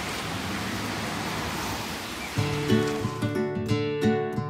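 A steady outdoor hiss, then strummed acoustic guitar music starting about two-thirds of the way through.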